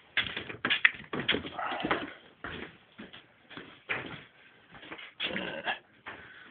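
Rummaging and handling noises: irregular rustles and light knocks, as of fabric and objects being moved about while a pair of boxer shorts is fetched.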